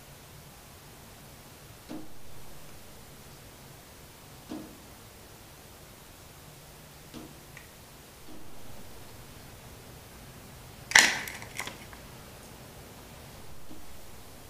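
Tomcat plastic snap mouse trap snapping shut on a mouse about eleven seconds in: one sharp snap followed by a few smaller clicks as the trap jumps and settles. Softer knocks come earlier, over a faint steady hum.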